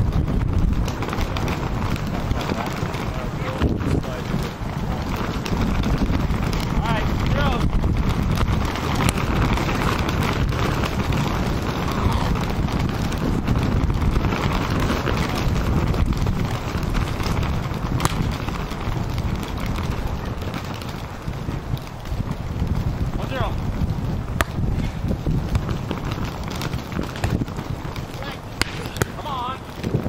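Wind rumbling on the microphone, with indistinct voices and a few sharp knocks of a volleyball being played.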